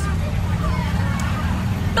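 Moving school bus heard from inside: a steady low engine and road rumble, with faint chatter from other passengers.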